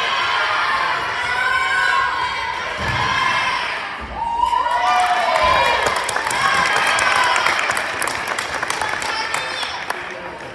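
Girls cheering and shouting for a gymnast's uneven bars routine, growing louder about four seconds in. Under the voices come a few dull thuds, the loudest near four seconds, as the dismount lands on the mat.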